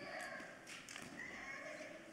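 Faint footsteps on the stage floor, with faint voices in the background.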